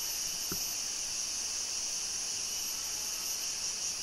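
Steady, high-pitched chorus of rainforest insects, with one faint click about half a second in.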